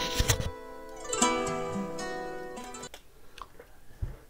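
Pitched-up melody sample of plucked, zither-like notes playing back in FL Studio, with low thuds in the first half second. It stops about three seconds in, leaving a few faint clicks.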